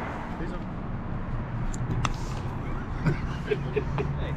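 Outdoor street ambience: a steady low engine hum of nearby traffic, with faint low voices and a single light click about two seconds in.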